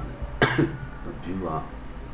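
A person coughs once about half a second in, and there is brief talk in the room soon after.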